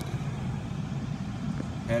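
Steady low rumble inside the cabin of a 2015 BMW 650i with its 4.4-litre V8 running.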